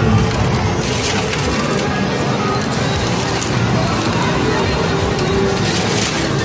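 A plastic bag full of wrapped candy rustling and crinkling as it is handled, with a few sharper crackles. Behind it is the constant din of arcade machine music and jingles.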